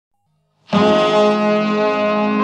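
Brass instruments open the song's instrumental intro with a loud, held chord that starts suddenly about two-thirds of a second in.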